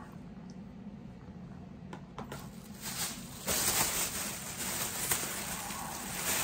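Handling noise from tobacco packages being picked up and moved: a couple of small clicks about two seconds in, then a rustling, scraping noise from about three seconds in.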